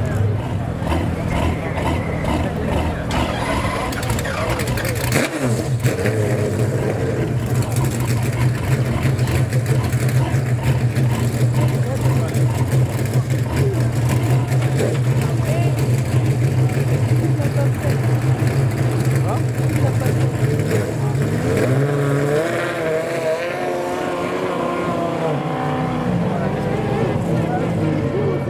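Pagani Zonda R's V12 idling with a steady low drone.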